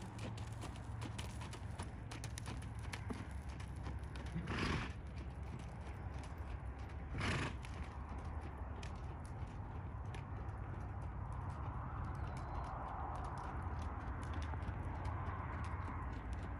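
A horse's hooves beating on sandy arena footing as it trots and lopes, a steady run of soft hoofbeats. Two short, louder rushing bursts come about four and seven seconds in.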